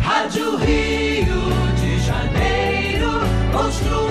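Music: a choir singing with instrumental accompaniment, in a gospel style.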